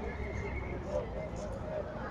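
Busy street ambience: voices of people in a crowd over a steady low rumble of traffic.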